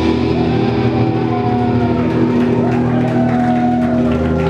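Amplified electric guitar and bass holding sustained notes that ring out at the close of a live rock song, with no drum beat. A higher tone slides up and down above the held notes.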